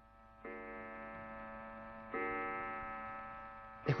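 A clock striking twice, each chime ringing on and slowly fading, the second stroke louder than the first.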